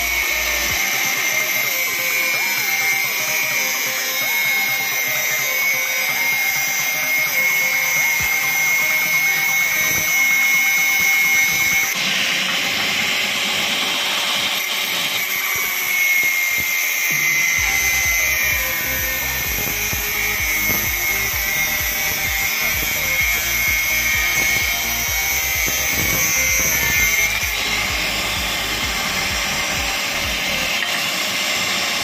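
Handheld angle grinder with a thin cut-off disc cutting through an iron bar, running continuously. Its motor whine sags in pitch as the disc bites into the metal and recovers as the load eases, several times over.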